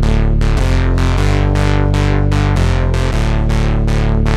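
ASM Hydrasynth playing a simple arpeggiated pattern, about four plucked notes a second over a held bass that shifts to new notes a few times, heard through the Universal Audio 1081 Neve-style preamp plug-in.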